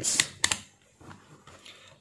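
Rotary range selector dial of a Tenma 72-8155 LCR meter being turned by hand, its detents giving a few sharp clicks in the first half second, followed by faint handling noise.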